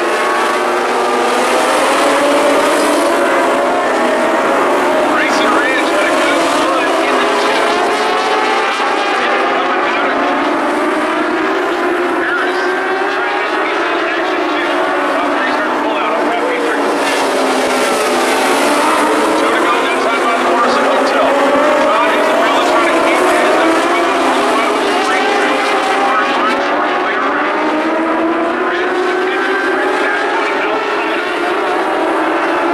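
Several dwarf race cars with motorcycle engines racing around the oval together, their high engine notes overlapping and rising and falling continuously as they accelerate, lift for the turns and pass by.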